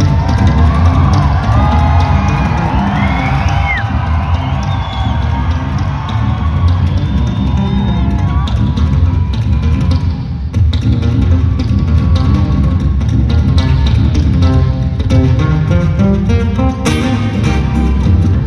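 Solo acoustic guitar played live through an arena PA: a steady percussive thumb bass line under picked chords, turning into quick, rhythmic strikes in the last few seconds. Crowd cheering and whoops rise over it in the first half.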